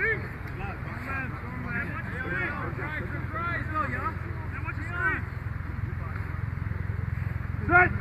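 Several voices of football players talking and calling out across the field, faint and overlapping, over a steady low rumble.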